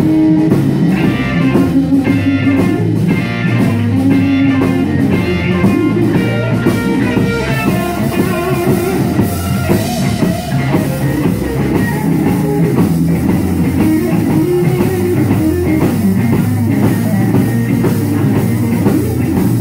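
Live rock band playing an instrumental passage: electric guitars and bass over a drum kit, with a melodic guitar line standing out in the first half.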